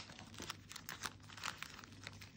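Clear plastic sleeves of nail decal sheets crinkling as they are handled and shuffled, a faint run of quick crackles.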